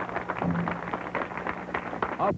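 Studio audience applauding: many quick, irregular hand claps, with music still sounding under them.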